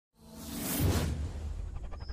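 Logo-intro whoosh sound effect that swells to a peak about a second in over a deep rumble, then trails off into a quick flutter.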